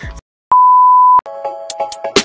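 A single loud electronic beep, one steady high tone lasting under a second, followed by electronic background music starting with sustained notes and clicking beats.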